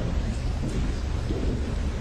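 Steady low rumble and hiss of room noise in a large meeting hall, picked up by the panel's open microphones, with no distinct events.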